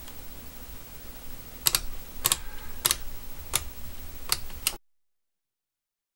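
Yashica FX-7 shutter speed dial being turned step by step, its detents clicking six times about half a second apart.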